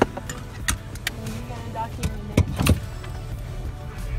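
Inside the cab of a 1992 Toyota 4Runner creeping over a rutted, icy trail: a low engine and road rumble with a handful of sharp knocks and rattles as the truck jolts, the loudest two close together past the middle. Background music plays faintly underneath.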